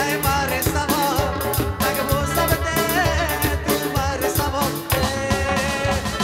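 Live band playing an upbeat Afghan Qataghani-style song: a drum kit and percussion keep a steady, driving beat under a wavering melody line.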